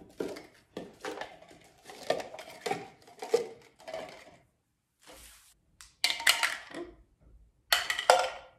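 Plastic cups being pulled off a stack and set down one by one on a stone countertop: a run of light clacks and taps. A short lull follows, then louder rustling and clattering near the end.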